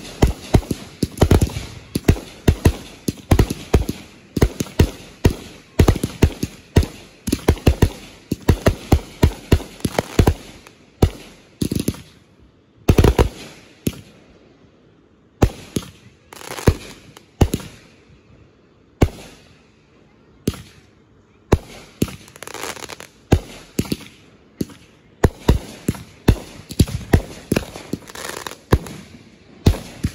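Aerial fireworks bursting overhead: a rapid string of sharp bangs and crackles, often several a second, with one louder, longer bang near the middle and a brief thinning-out after it before the bangs pick up again.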